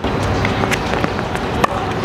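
Tennis racket striking a ball on a forehand, a sharp pop about one and a half seconds in, with a few lighter knocks and a steady rushing noise throughout.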